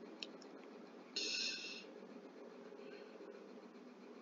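Quiet steady room noise, with a couple of faint clicks just after the start and a short burst of hiss about a second in that lasts under a second.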